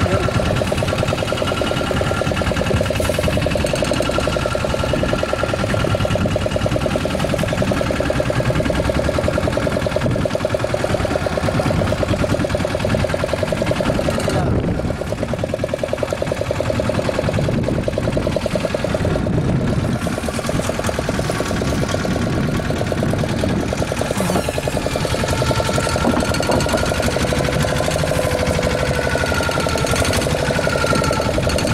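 Fishing boat's engine running steadily with a fast, even pulse, dipping briefly about halfway through and wavering slightly in pitch near the end.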